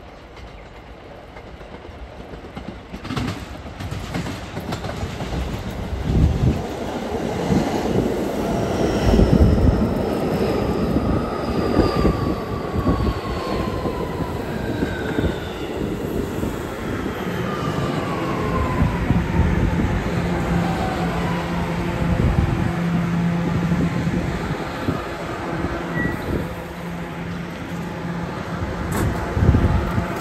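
An R211A New York City Subway train pulling into the station and braking to a stop. The wheels clatter over the rails, and the propulsion whine falls steadily in pitch as the train slows. A steady low hum follows while it stands, with a sharp clunk near the end as the doors open.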